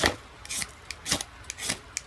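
A striker scraped down a ferrocerium rod to throw sparks: four short rasping scrapes about half a second apart.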